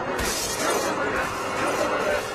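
A crash with a shattering, breaking noise just after the start, laid over dramatic film score music.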